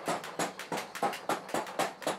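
Blacksmith's hammer striking hot iron in a forge: quick clanging strikes, about four a second.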